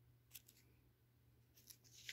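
Near silence with a couple of faint paper clicks, then the thin glossy page of a paper catalog starting to rustle as it is turned near the end.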